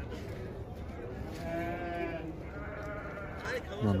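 A sheep bleating in the background, one long wavering call starting about a second in, followed by a fainter call.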